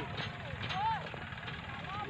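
Faint voices over a steady low rumble.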